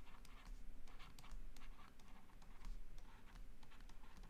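Stylus writing on a tablet screen: a faint run of light, irregular taps and short scratches as words are handwritten.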